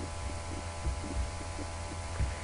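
Steady low electrical hum with a faint buzz of evenly spaced overtones: mains hum picked up by the recording microphone. A couple of soft low thumps come about a second in.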